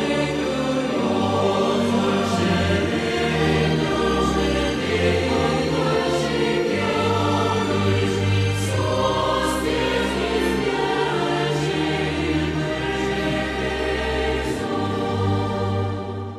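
Choir singing a sacred hymn in Italian, over low bass notes that are held for a second or two and then change.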